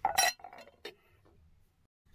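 Clear glass bowl of cut fruit clinking: a loud clink with a brief rattle right at the start, then a second short, sharp clink a little under a second in.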